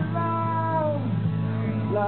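Live band music from two acoustic guitars and an electric bass. A high note slides downward in pitch over the first second over a steady low bass line.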